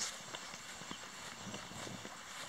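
Footsteps on grass, soft irregular thuds about every half second over a steady outdoor hiss.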